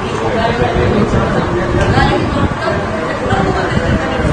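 Speech only: a woman talking steadily in Malayalam.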